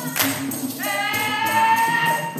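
Dikir barat singing: a group's sharp hand clap just after the start, then a long held sung note from about a second in, over a steady percussion beat.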